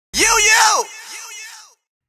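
A loud shouted voice swoops up and then down in pitch. It is followed by a quieter echo of the same call that fades out before two seconds.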